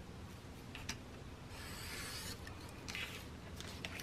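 Craft knife blade scoring through paper along a ruler on a cutting mat: one faint scratchy cutting stroke about a second and a half in, lasting under a second, with a few light clicks of the paper and ruler being handled.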